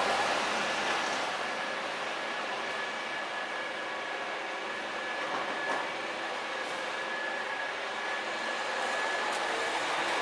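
A damaged tram creeping onto a low-loader trailer, a steady mechanical hum with a thin, even whine running under it and a faint click or two in the second half.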